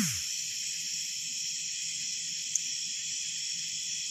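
Steady chorus of night insects, crickets among them, a continuous high shrill trilling, with one faint click about two and a half seconds in.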